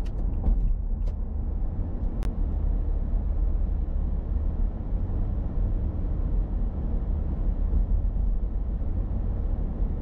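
Steady low road and engine rumble of a car driving, picked up by a dashboard camera inside the cabin. A few faint clicks sound in the first second, and a single sharp tick comes about two seconds in.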